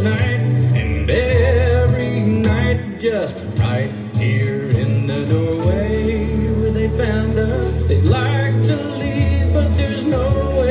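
A recorded song playing back: a singer's melody over a band, with sustained bass notes underneath.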